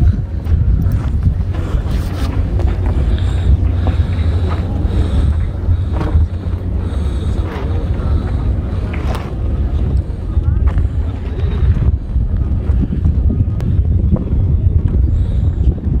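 Strong wind buffeting the phone's microphone, a loud, steady low rumble, with faint voices of people in the background.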